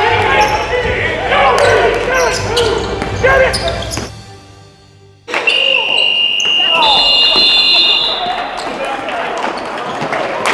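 Voices and shouting on a basketball court, with ball bounces, fading out about four seconds in. A second later a sudden, long, high, steady tone starts and holds for nearly three seconds, with a second, higher tone joining near its end. Then court voices return.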